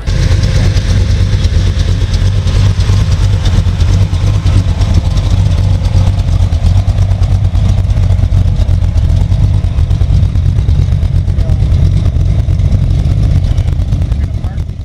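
Loud, steady car engine rumble with a deep, fast-pulsing exhaust note. It starts abruptly and keeps on without a break.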